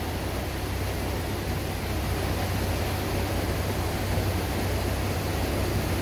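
Canal lock leakage: water pouring over the top lock gate and falling into the lock chamber, a steady rushing roar with a low rumble underneath.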